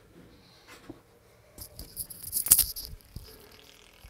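Small hard objects rattling and clicking as they are handled close to the microphone, in a burst of about a second and a half that is loudest about two and a half seconds in.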